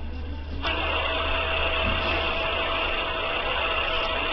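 A steady mechanical whir with a faint constant whine starts suddenly about half a second in and runs on evenly, over a low hum.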